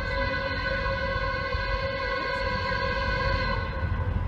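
Norfolk Southern locomotive's Nathan P5 five-chime air horn blowing one long, steady chord as the train approaches; the horn sounds awful.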